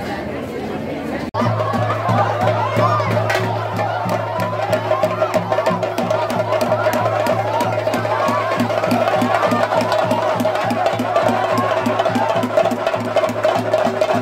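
Festival percussion music: fast, even drumming with a high wavering melody over a steady low drone, starting abruptly about a second in.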